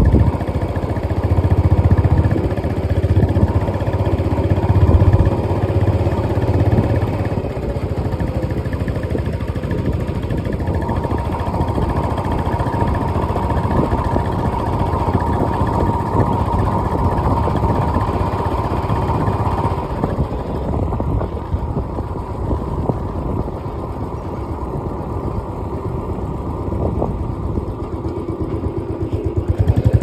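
Engine and tyre noise of a vehicle driving steadily along a paved road. A faint steady whine sits over it through the middle of the stretch.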